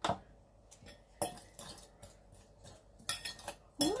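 A sharp knock as a small jug is set down at the start, then a metal spoon clinking and scraping against a glass mixing bowl in a few separate strokes as breadcrumb stuffing is mixed with milk.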